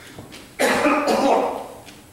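A person coughing: one loud, harsh cough starting about half a second in and trailing off over about a second.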